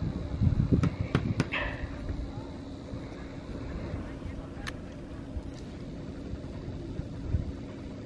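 Wind on the microphone, gusting in the first second and a half, then a steady hiss of breeze, with a few small clicks from handling the camera.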